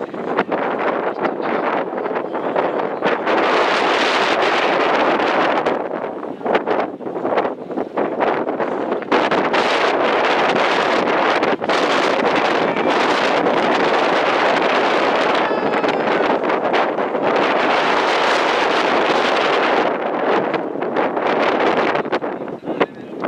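Wind buffeting the camera microphone in loud, gusting rushes that ease off a couple of times, around six seconds in and near the end.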